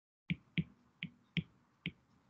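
Stylus tip tapping on a tablet's glass screen during handwriting: five short, sharp clicks about half a second apart.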